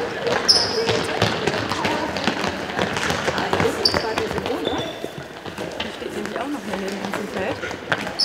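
Handball practice game on an indoor sports-hall floor: a handball bouncing and many footfalls, a few short high squeaks of players' shoes, and girls' voices calling out during play.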